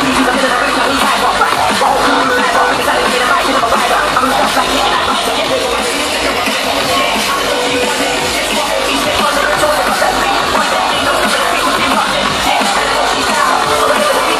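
Loud drum and bass played by a DJ over a festival sound system, recorded on a phone from within the crowd; the level stays steady throughout.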